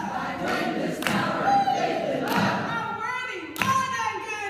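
A woman singing a worship song to her own strummed acoustic guitar, with a congregation singing along; sharp strum strokes stand out a few times.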